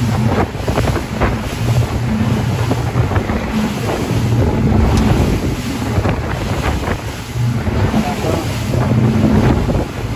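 Wind buffeting the microphone over the steady low drone of the boat's engines and water rushing along the hull as the boat runs at speed.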